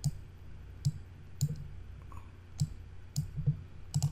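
Computer mouse buttons clicking, about half a dozen sharp clicks at uneven intervals, as points of a shape are grabbed and dragged in PowerPoint.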